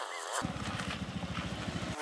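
Small single-cylinder four-stroke engine of a Honda Zoomer motor scooter running as it rides off at low speed, a steady rapid putter starting about half a second in.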